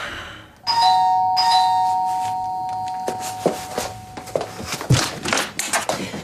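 Two-tone ding-dong doorbell chime, a higher note then a lower one, sounding about a second in and ringing on as it dies away over the next few seconds. A few scattered clicks and knocks follow.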